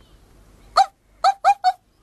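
A child imitating a dog's bark with the voice: four short, high barks, one about a second in and three quickly together near the end.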